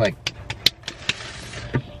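A hand slapping a thigh again and again as an improvised drum roll: about eight quick, irregular slaps over a second and a half.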